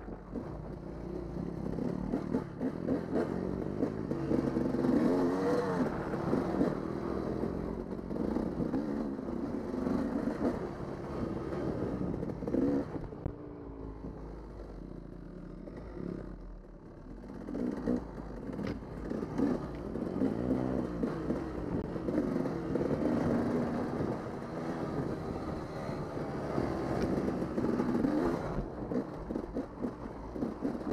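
Dirt bike engine heard close up from a helmet-mounted camera as it is ridden on a trail, its revs rising and falling again and again. For a few seconds near the middle it eases off to a lower, quieter run before picking up again.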